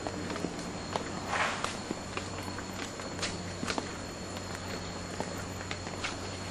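Footsteps walking on a paved path: a string of light, irregularly spaced steps.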